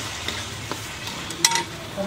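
Curry gravy sizzling in a steel wok as a steel ladle stirs it, with light scrapes and one sharp metallic clink of the ladle against the pan about one and a half seconds in.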